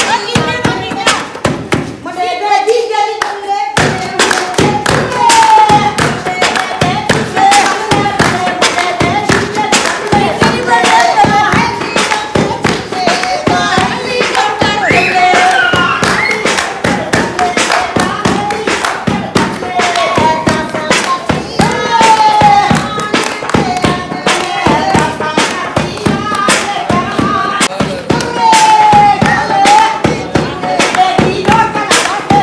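Rhythmic hand-clapping in time with women singing, the clap-driven beat of a Punjabi giddha dance. The beat drops away briefly about two seconds in, then resumes.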